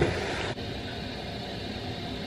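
A short rustle of a jacket being handled right at the start, then, after an abrupt change about half a second in, a steady, even hiss of background noise with no distinct events.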